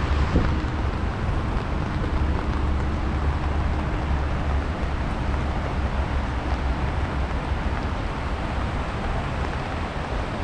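Steady rush of fast-flowing floodwater, with wind buffeting the microphone.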